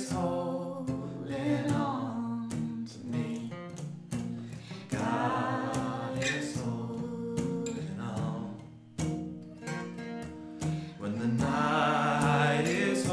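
Two acoustic guitars strummed while a woman and a man sing a slow worship song together.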